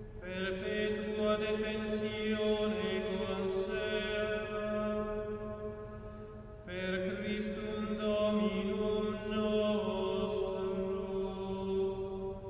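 Male plainchant sung in unison: two phrases of slow, held notes, with a brief breath between them about six and a half seconds in.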